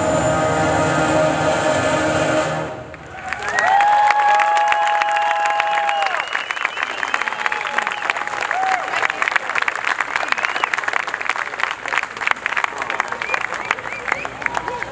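Concert band holding a final full chord that cuts off a little under three seconds in, followed by audience applause with cheering and whoops.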